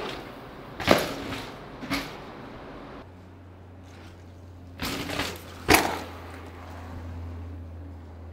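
Mountain bike hitting concrete stairs and pavement: a few sharp knocks, one about a second in, a smaller one a second later, and the loudest near six seconds in.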